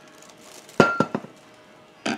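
Stainless steel S'well water bottle clinking against something hard: one sharp metallic clink with a brief ring a little under a second in, then two lighter knocks.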